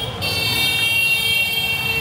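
A vehicle horn sounding one steady high-pitched tone, starting just after the beginning and held for about two seconds, over a low rumble of street traffic.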